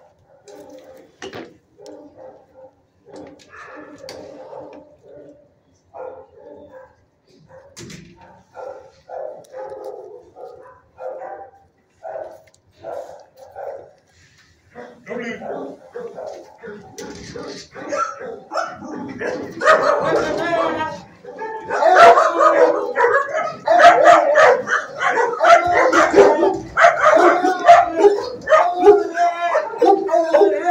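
Dogs barking, yipping and howling in shelter kennels: short calls, sparse and fairly quiet at first, then much louder and almost continuous from about halfway through.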